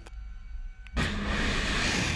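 Missile launching from a warship: after a second of faint hum, a sudden loud rushing roar with a deep rumble sets in and keeps going.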